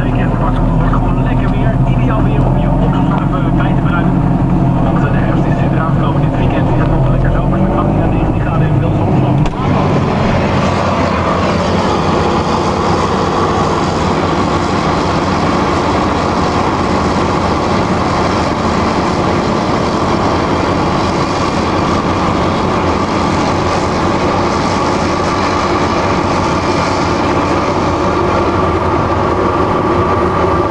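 Self-propelled forage harvester chopping maize and blowing the chopped crop into a trailer, together with tractor engines, as one steady heavy machine drone. About ten seconds in the sound changes abruptly to a denser, harsher rush with more hiss, which then holds steady to the end.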